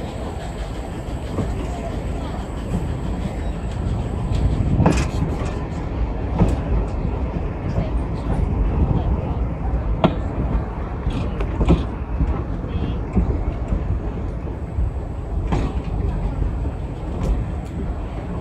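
Train wheels rolling slowly on old jointed track: a steady low rumble broken by sharp clicks and clanks a few seconds apart as the wheels cross rail joints.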